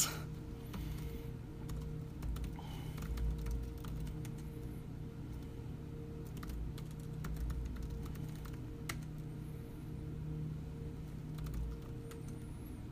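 Computer keyboard typing: scattered single keystroke clicks as short terminal commands are typed, over a steady low hum.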